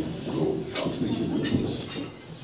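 Indistinct voices with no clear words: short, broken bits of speech-like sound.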